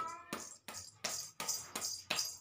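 Rhythmic hand slaps, about three a second, each one short and sharp.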